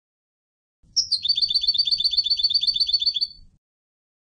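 European goldfinch (Turkish goldfinch) singing. About a second in, one high note opens a rapid run of identical repeated notes, about seven a second, that lasts a little over two seconds and then stops.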